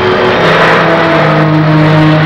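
A van driving by: its engine and road noise, a rushing noise that swells about half a second in, over held background music notes.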